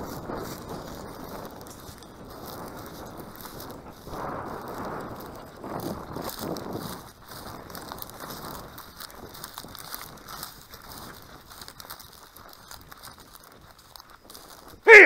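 Dry grass rustling and crackling underfoot as someone walks across a field, with louder rushes of noise about four and six seconds in.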